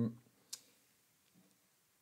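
The end of a speaker's drawn-out 'um' fades out, then one short, sharp click about half a second in, followed by near silence.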